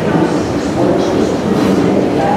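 Busy railway station ambience: a loud, steady rumble and hiss of trains and the hall, with indistinct voices mixed in.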